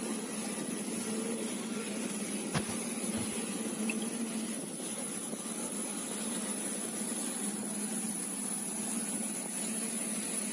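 Jet aircraft noise on an airport apron: a steady rushing hum with a constant high-pitched whine above it, and one sharp click about two and a half seconds in.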